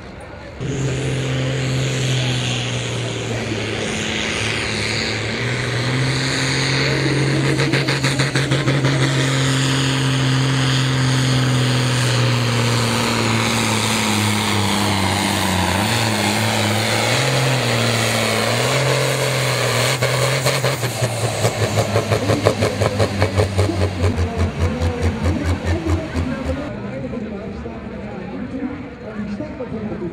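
New Holland 8560 pulling tractor's diesel engine at full throttle dragging a weight-transfer sled: a loud steady engine note that drops in pitch and wavers as the load builds partway through. The note then turns into a rapid pulsing for several seconds before falling away near the end as the pull finishes.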